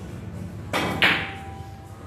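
A pool shot: the cue strikes the cue ball, and a moment later comes a loud, sharp clack of balls colliding, about a second in, which rings out briefly.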